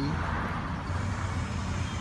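An engine running steadily with a low rumble, with a brief hiss in the first second.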